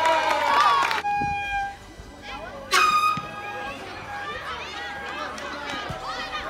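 Spectators' voices calling out, then horn toots from the sideline: a steady one about a second in and a short, loud, sharp blast near the three-second mark, followed by quieter chatter.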